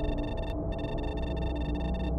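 Dark electronic intro drone: a steady low rumble and hum under a cluster of high, steady electronic tones, which drop out briefly about half a second in.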